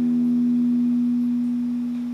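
Electric guitar holding one sustained note that rings on steadily and slowly fades, with no new note picked.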